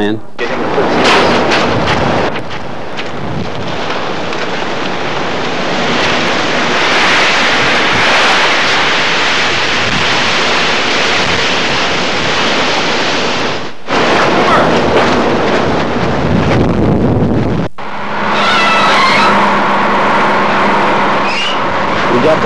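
A stuck truck's engine running hard as men push it out of the mud, with indistinct voices over it. The sound breaks off sharply twice, at cuts in the recording.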